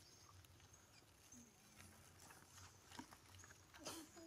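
Near silence: faint outdoor ambience with a low hum and a few soft, scattered clicks.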